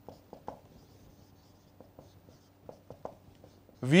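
Marker pen writing on a whiteboard: a run of short, scattered taps and strokes of the tip on the board. A man's voice starts right at the end.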